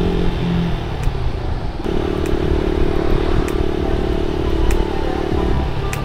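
Buccaneer 125 motorcycle riding at road speed: a steady engine drone under heavy wind rumble on the microphone.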